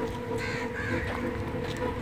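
Crows cawing, a couple of short calls in the first second, over a steady low hum.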